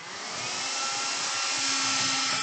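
A cloth wiping across a wet glass lightboard to erase it: a steady rubbing hiss with a few faint squeaky tones.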